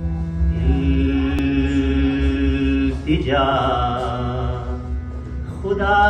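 Opening of a qawwali: harmonium with a voice holding long sung notes over a steady drone, sliding up to a higher note about three seconds in, with no drumming.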